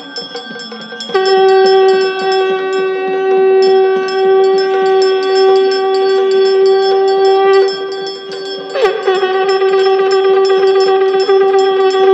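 A conch shell (shankh) blown in two long, steady blasts during the aarti, the second starting with a brief dip in pitch, over continuous rhythmic ringing of temple bells.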